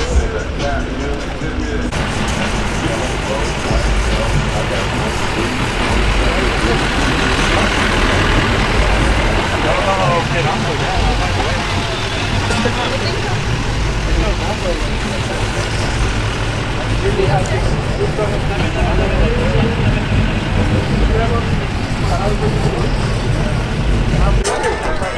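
Lifted pickup truck's engine running steadily, with people talking nearby.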